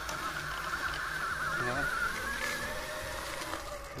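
Electric mountainboard's 36-volt motor whining steadily under load as it climbs a dirt slope at very low speed. The pitch wavers, and the whine fades near the end as the board reaches level ground.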